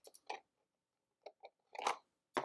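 Small plastic miniatures clicking and rattling against each other as they are fitted into a plastic card deck box: a few light clicks, a pause, then a louder clatter near the end.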